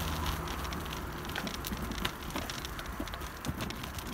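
Bicycle rolling fast downhill on rough asphalt: a steady low rumble with many short crackling ticks throughout.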